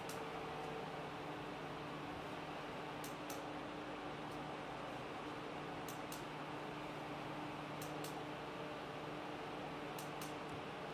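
Orison bladeless ceiling fan running steadily: an even rush of air with a faint low motor hum. A few pairs of light clicks come about three, six and eight seconds in.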